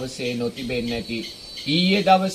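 A man speaking in Sinhala, preaching, with a short pause about a second in. A faint steady high-pitched chirring of insects runs behind the voice.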